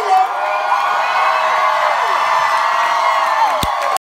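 Concert crowd cheering and whooping, many voices shouting at once, picked up on a phone microphone. A single sharp knock comes near the end.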